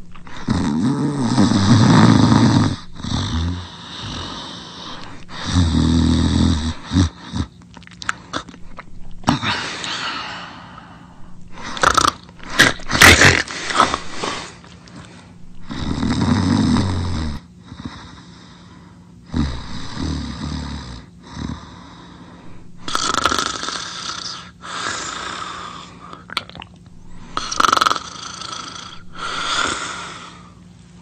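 Loud snoring. Deep, low snores alternate with harsher, higher-pitched breaths, one every few seconds, the loudest about halfway through.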